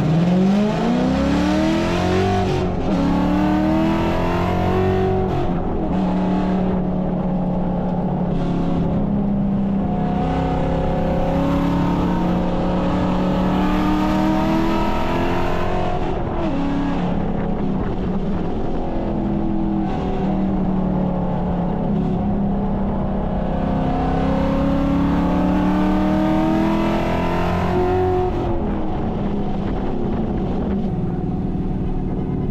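2013 Ford Mustang GT's 5.0-litre V8 heard from inside the cabin under hard acceleration: the pitch climbs steeply at the start and drops back twice in the first few seconds as it shifts up. It then holds steadier, climbs again and falls back twice more over the lap, rising on the straights and easing off for the turns.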